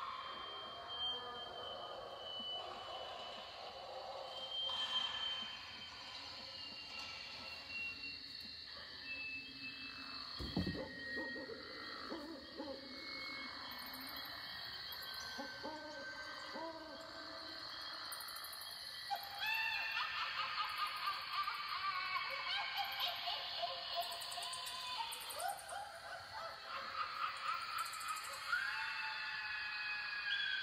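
A spooky Halloween sound-effects recording playing back: drawn-out eerie tones and short gliding calls, getting busier and louder about two-thirds of the way through, with a single sharp knock near the middle.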